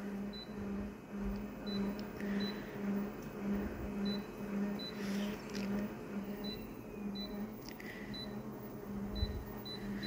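Photocopier touch panel giving a dozen or so short, faint high beeps as its settings are tapped, over a low hum that pulses a few times a second.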